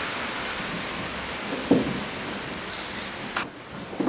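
A wooden picture frame being handled against a wall over a steady hiss: one knock a little before halfway, the loudest sound, and a sharp click near the end.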